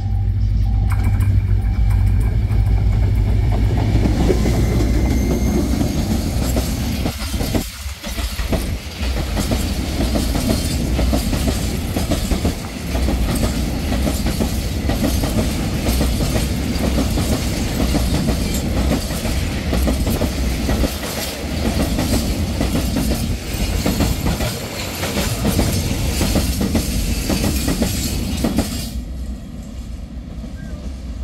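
Diesel freight train passing close: the locomotive's engine drone comes first, then a long string of tank wagons rumbling and clacking over the rails. The noise drops off near the end as the last wagon goes by.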